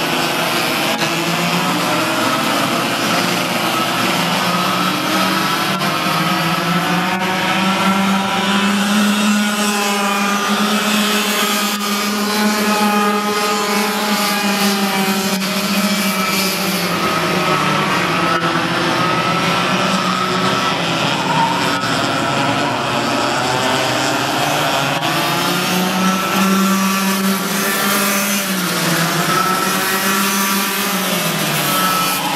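Several Yamaha two-stroke cadet kart engines racing together, their overlapping whines rising and falling as the karts brake into and accelerate out of the corners.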